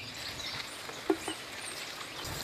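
Outdoor background ambience with scattered faint bird chirps, and one brief low sound about a second in.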